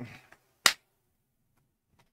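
A single sharp click about two-thirds of a second in, just after a voice trails off.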